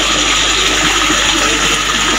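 Steady rush of running water.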